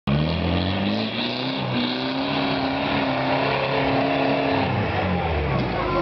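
A 4x4 off-roader's engine revving hard under load on a steep dirt climb, its pitch stepping up and holding high, then dropping near the end.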